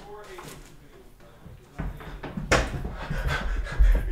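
Faint, muffled voices with low handling rumble, a sharp knock about two and a half seconds in, and a dull low thump near the end.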